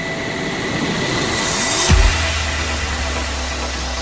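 Cinematic intro sound design: a rising noisy whoosh that builds to a deep impact hit about halfway through, followed by a sustained low bass rumble.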